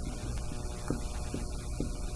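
Steady electrical hum, with a few faint short ticks from a marker writing on a whiteboard.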